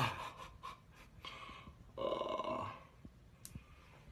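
Short wordless vocal noises from a man: a sudden one at the start, a brief one just over a second in, and a longer, louder pitched one about two seconds in.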